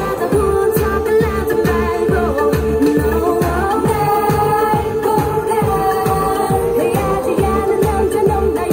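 Asian pop song with singing over a steady beat of deep bass drum hits, played through a small portable Roland Cube amplifier.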